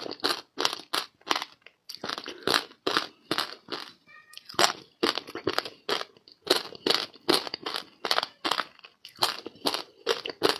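Ice coated in passion fruit pulp being chewed close to the microphone: sharp, crisp crunches about three to four a second, with a brief pause about four seconds in.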